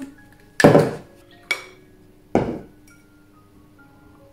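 Three sharp clinks and knocks about a second apart from a small juice bottle and a cup being handled, over soft background music.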